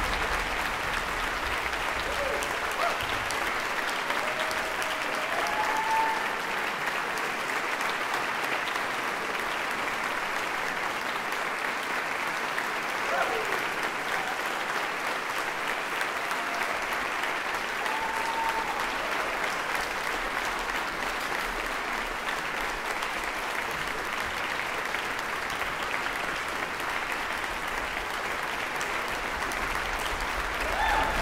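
Audience applauding steadily after a concert, with a few voices calling out over the clapping, their pitch rising briefly a few times.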